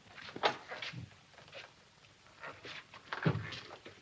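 Footsteps and shuffling on a wooden floor with a wooden door being opened: a handful of separate knocks and scuffs, the loudest about three seconds in.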